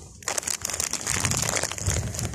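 Dense crackling rustle with many fine clicks and a low rumble underneath, starting a moment in.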